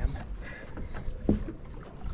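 Low, steady rumble of a fishing boat on choppy lake water, with one short knock a little past midway.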